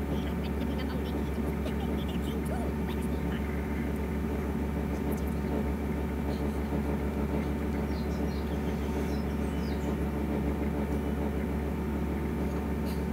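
Steady low hum of room and microphone noise, with a few faint scattered ticks.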